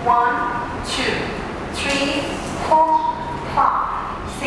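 A woman's voice counting out the dance beats aloud, one short word roughly every second.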